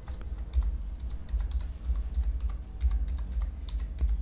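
Typing on a computer keyboard: a steady run of quick key clicks as one word is typed, with a low rumble underneath.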